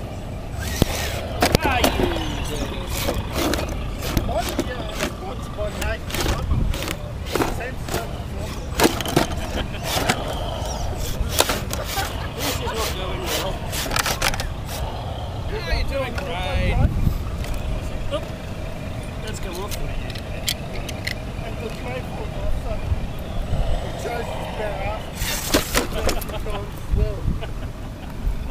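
Scale RC rock crawler working over rock, its tyres and chassis knocking and scraping on the stone in many sharp, irregular clicks.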